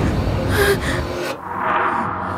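A person gasping sharply over a dramatic low rumble, which cuts out a little past a second in and leaves a faint held tone.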